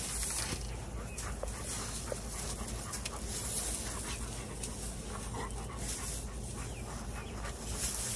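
Two Rottweilers pawing and nosing rocks across loose pea gravel, the gravel scraping and crunching in repeated bursts, with the dogs' low grumbling and whining as they play.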